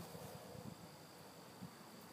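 Near silence: faint steady outdoor background hiss, with one small tick about one and a half seconds in.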